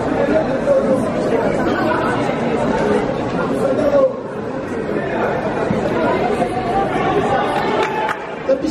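Many voices chattering at once, echoing in a large sports hall.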